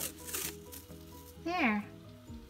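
Soft background music, with a short crackle of washi tape being pulled off its roll right at the start. A brief voice sound falling in pitch comes about one and a half seconds in.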